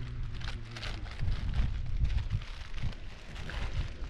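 Wind buffeting the microphone in uneven gusts, a rumbling low roar, with light irregular crackling over it.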